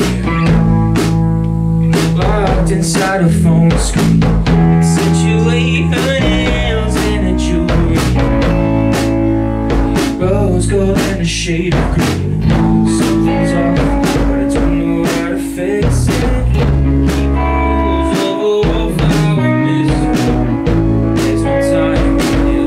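Indie rock band playing live, with electric guitar and a drum kit and steady, dense drum strikes over held guitar notes.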